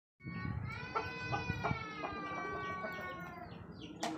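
One long drawn-out animal call, held for about three seconds and gently falling in pitch towards the end, with a few light knocks underneath.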